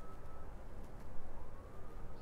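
A faint, thin high tone that holds and then slowly glides up, over low background rumble.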